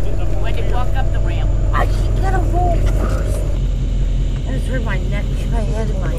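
An engine idling with a steady low rumble, with people's voices calling out over it.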